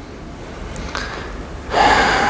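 A man's loud breath into a close microphone near the end, after a quiet pause with room noise.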